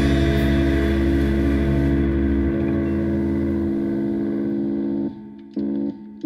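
Rock band's final chord ringing out on distorted electric guitars and bass, held steady; the bass notes drop out partway through. About five seconds in the ringing chord cuts off, and a short guitar chord stab follows.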